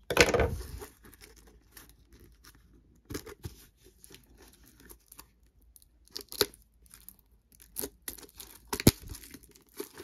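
Plastic shrink-wrap being torn and crinkled off a trading-card box, with a loud rip right at the start. Scattered crinkling and a few sharp ticks follow through the rest.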